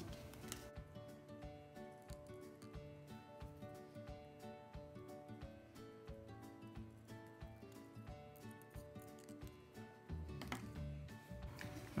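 Quiet instrumental background music of steady sustained notes, with faint clicks of scissors snipping paper tape.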